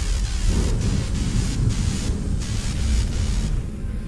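Thunder-like sound effect for an animated logo intro: a deep rumble under a rushing hiss, the hiss falling away about three and a half seconds in.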